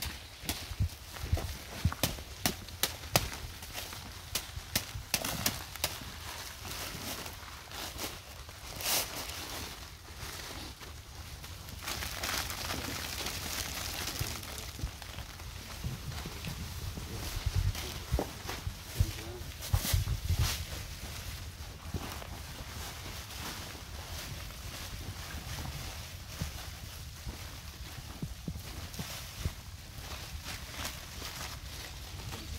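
Handling noise from bare-rooting avocado seedlings: scattered knocks, taps and crackling rustle as potting soil is shaken and knocked off the roots and the black plastic sleeves are pulled away, with footsteps on soil. A denser stretch of rustling comes about twelve seconds in.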